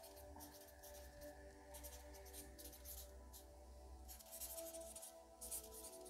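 Faint scratching of a pen writing on paper, in short irregular strokes, over soft sustained background music.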